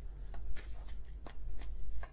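Tarot deck being shuffled by hand: a run of soft, irregularly spaced card clicks and slides.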